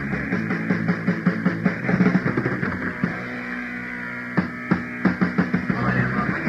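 Punk rock band playing electric guitar, bass and drums, heard off a 1984 cassette demo tape with a dull, muffled sound and little treble. The drums drop out for about a second a little past the midpoint, then come back in with two hard hits and a fast beat.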